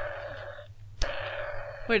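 Plastic action mechanism of a Kenner Jurassic Park T-Rex toy being worked twice: each time a sharp click and then a short rasping scrape of under a second. The second one comes about a second in.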